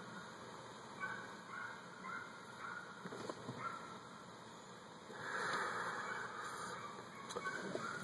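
A man takes a quiet drag on a menthol cigarette, then about five seconds in gives a breathy exhale of smoke that lasts a second or two, the loudest sound here.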